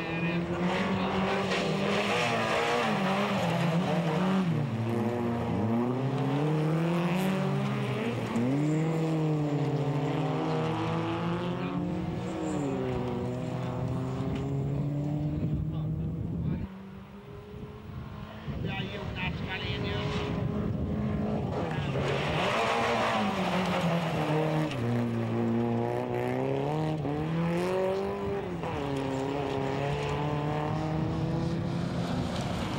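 Folkrace cars racing on a dirt track, their engines revving up and down repeatedly as they take the corners, more than one engine at a time. The engine sound drops away briefly a little past halfway, then returns.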